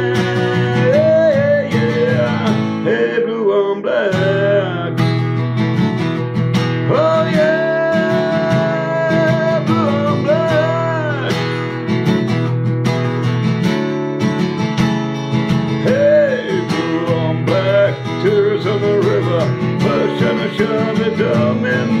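Acoustic guitar with a capo playing an instrumental passage: strummed chords under a melody line whose long notes bend and waver in pitch.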